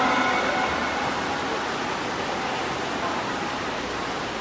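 A steady wash of splashing water from several swimmers racing down the lanes of a pool.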